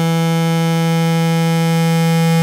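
Native Instruments Massive software synth holding a single note on its square-saw wavetable oscillator, with six unison voices spread across different wavetable positions. The note is loud, steady in pitch and rich in overtones.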